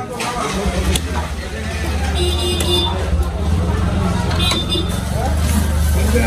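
A steady low engine rumble, with a couple of cleaver chops on the wooden block in the first second and voices and a short toot in the background.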